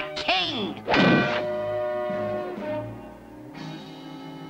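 Cartoon soundtrack: a short bit of voice at the start, a thunk sound effect about a second in, then background music with held notes that fade out.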